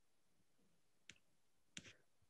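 Near silence over a video call, broken by a faint single click about halfway through and another faint short click-like sound near the end.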